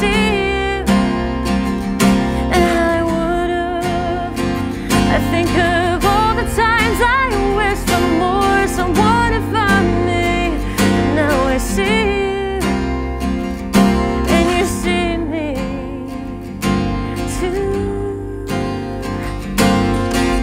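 Acoustic guitar played with a woman singing a melody over it, her voice wavering with vibrato on held notes.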